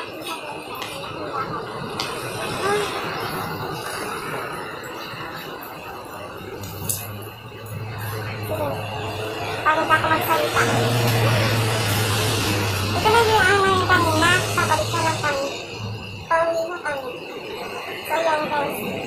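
Roadside street sound: traffic going by, with voices and music in the mix. A low steady hum runs through the middle stretch and ends a couple of seconds before the close.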